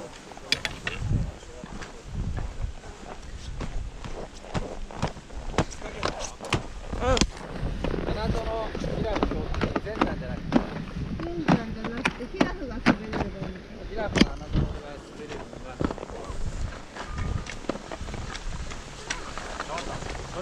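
Indistinct voices of people talking nearby, mostly in the middle stretch, over crunching snow and the scraping and clatter of skis and poles as a skier slows to a stop in deep snow.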